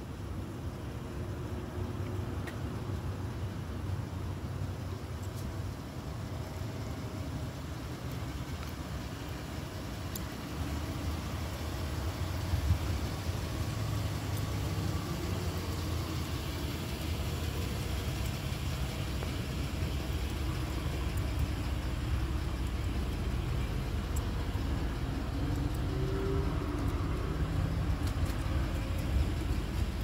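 Ford Transit van's engine idling steadily.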